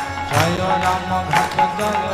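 Devotional Hindu kirtan music: a voice singing a chant over steady rhythmic percussion.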